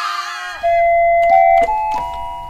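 A held high cry cuts off about half a second in. Then an electronic keyboard plays a few single sustained notes that step upward in pitch, like a short video-game jingle.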